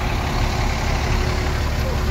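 Yutong ZK6122H9 coach's diesel engine idling: a steady low rumble with a faint steady hum above it.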